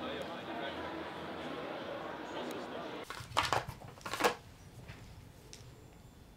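Indistinct background voices, then two short bursts of clicking and crackling as fingers work at the small plastic packaging of a nicotine replacement product.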